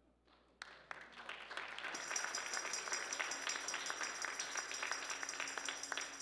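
Church congregation applauding: many hands clapping that start about half a second in, swell, and begin to die away near the end. A faint high-pitched steady tone sits over the clapping from about two seconds in.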